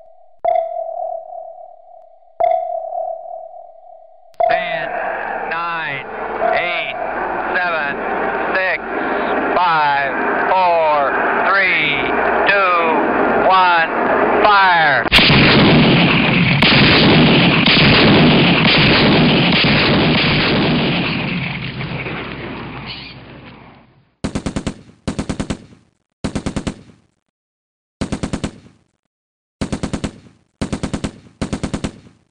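War sound-effect collage: a few sonar pings, then overlapping sliding, wavering tones that build into a loud, dense roar of gunfire and artillery, which fades out. After that come short, separate bursts of machine-gun fire near the end.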